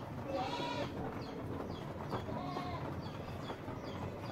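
Animal calls: one drawn-out call about half a second in and another about halfway through, over a steady low background noise.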